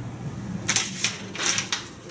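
Paper rustling as a printed sheet is handled and picked up, in several short bursts in the second half.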